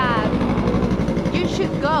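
Street traffic: a motor vehicle's engine running with a low, steady drone, while a woman's voice speaks in short bits at the start and near the end.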